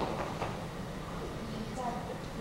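A pause in speech in a large hall: low, even room noise with a faint click and a faint voice near the end.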